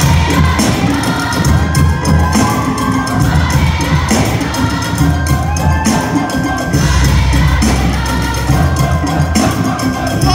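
Live music from a high-school wind band's stage number, loud and continuous, with a steady drum beat and sustained bass notes, and a crowd of voices cheering along.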